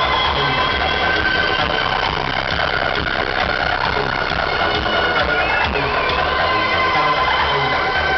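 Loud acid house dance music over a festival sound system, with sustained synth tones over a pulsing bass beat.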